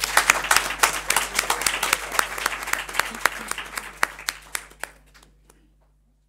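Audience applauding, the clapping dense at first, then thinning out and dying away over about five seconds.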